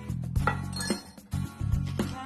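Wire balloon whisk clinking irregularly against the sides of a ceramic bowl as a runny instant-coffee and sugar mixture is whipped by hand for dalgona coffee. Background music plays under it.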